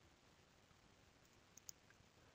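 Near silence, with a couple of faint computer-mouse button clicks close together near the end.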